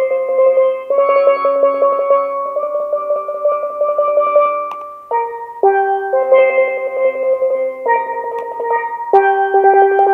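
A single steelpan played solo: a slow melody of long notes, each sustained by a rapid roll of strikes, moving to a new note every second or two.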